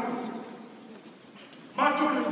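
A man's speech trails off into a pause of about a second and a half with low room noise, then the voice comes back loudly near the end.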